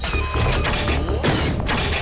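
Cartoon sound effects of a crab-like robot monster scuttling: a run of mechanical clicking and clattering over a low rumble, with action music underneath.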